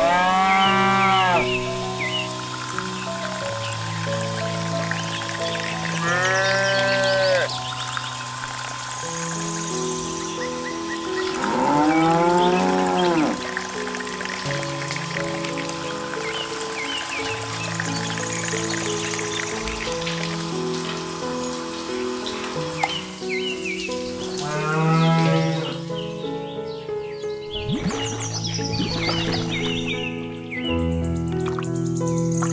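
Cattle mooing over background music: four long moos, each rising then falling in pitch, at the start, about 6 s in, about 12 s in and about 24 s in.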